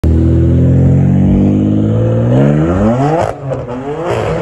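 BMW M4's twin-turbo straight-six engine held at steady high revs, then climbing steeply in pitch before cutting off abruptly a little over three seconds in. After the cut it runs on, rougher and lower.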